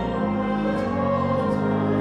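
Mixed chamber choir singing in a reverberant church, with long held organ notes underneath.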